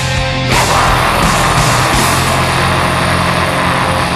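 Melodic death metal recording in an instrumental passage: loud distorted guitars, bass and drums playing steadily, with a fresh chord struck about half a second in.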